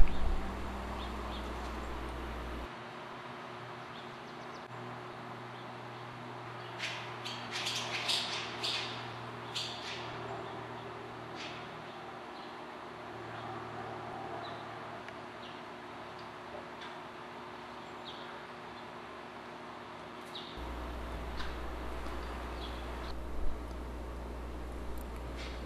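Barn swallows chirping and twittering at the nest, in short high calls that bunch together about a third of the way in and come again briefly near the end. A steady low hum lies underneath, stopping a few seconds in and returning near the end.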